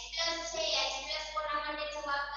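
Children singing in a drawn-out, sing-song unison, with long held notes.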